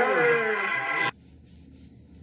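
Loud voices, cut off abruptly about a second in, followed by faint low room hum.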